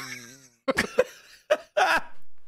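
Two men laughing in short, sharp bursts.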